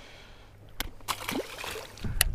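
Handling noise close to the microphone: a few sharp clicks and knocks, starting just under a second in, as a hand works at the camera and tackle.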